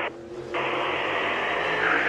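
Race team two-way radio keyed open with no one talking: a steady, narrow-band static hiss that comes on about half a second in, just after the tail of a spotter's word. The race car's engine runs faintly underneath.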